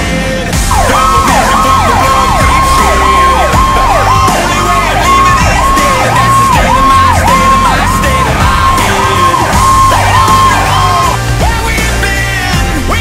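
Fire engine electronic siren in a fast yelp, rising and falling about twice a second, starting about a second in and stopping shortly before the end, over loud rock music with a heavy beat.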